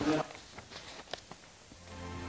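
Low-level room sound from a ceremony hall. A brief snatch of a voice opens it, followed by a few soft clicks, and a low hum comes in near the end.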